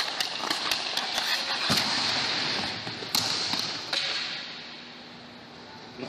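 A hockey player skating with a puck on rink ice: a steady hiss of skate blades on the ice with many small clicks of stick and puck. There is a heavier low thud about two seconds in and a sharp knock about three seconds in. The hiss fades away over the last couple of seconds.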